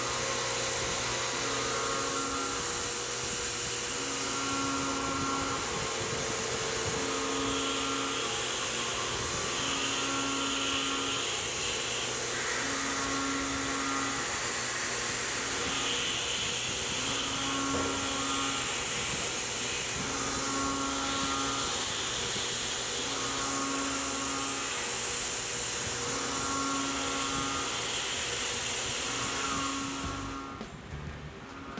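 Tormach 1100M CNC mill cutting an aluminium plate: the spindle and end mill run under a steady hiss. A humming tone comes and goes every two to three seconds as the cutter works around the contour.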